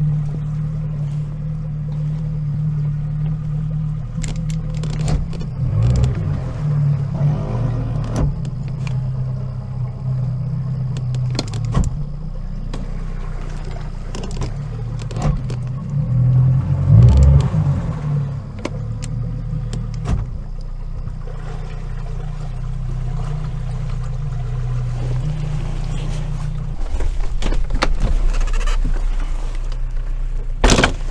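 Boat outboard motor running at low throttle while the aluminum boat is eased in to a rocky shore. Its note surges briefly about halfway and settles lower near the end. Scattered light knocks are heard.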